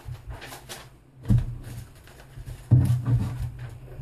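Paper sheets rustling and flapping as they are handled and turned over, with two louder bumps, about a second in and near three seconds in.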